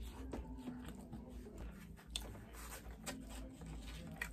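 Faint chewing of a mouthful of food, with scattered soft clicks of a fork in a plastic takeout container and one sharper click about two seconds in.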